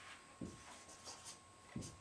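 Faint sound of a marker writing on a whiteboard: a few short strokes.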